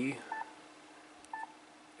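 Yaesu FT-991A transceiver's touchscreen key beeps: two short electronic beeps about a second apart as keys are tapped on its on-screen keyboard.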